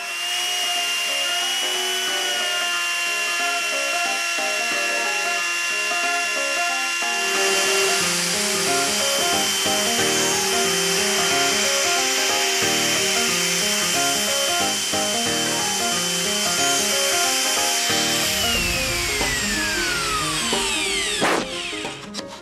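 Compact router with a bearing-guided flush-trim bit cutting through the wooden canoe hull along the daggerboard casing, its motor holding a steady high whine. About 18 seconds in it is switched off and the whine falls in pitch as the motor spins down. Background music plays under it.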